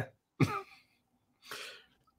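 A man's short throat noise, like a brief throat-clear, under a second in, then a faint breath.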